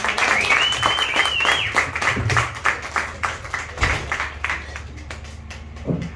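Audience applause with many hands clapping, thinning out and fading toward the end. Someone whistles a single high note over it in the first couple of seconds.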